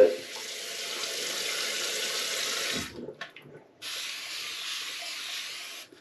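Bathroom tap running into a sink; the water is shut off about halfway through, turned back on about a second later, and shut off again near the end. A few light knocks fall in the gap.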